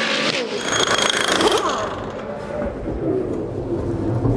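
A V8 Supercar's engine running at speed on track, with a rough rumble and a high whine in the first second or two, then lower, quieter engine and pit-lane sound.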